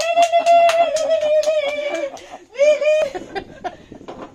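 Quick, excited hand clapping, about five claps a second, under a woman's long, high, held cry of delight. The cry breaks off about two seconds in and returns briefly, then softer claps and laughter follow.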